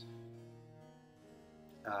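Quiet background music with harpsichord, its held notes slowly fading away.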